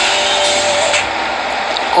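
Loud, steady hiss of background noise in a phone live-stream recording, with a faint steady tone in the first half.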